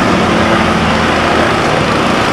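Steady road traffic noise: vehicle engines running.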